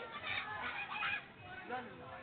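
Schoolchildren's voices chattering, with two loud, high-pitched cries in the first half.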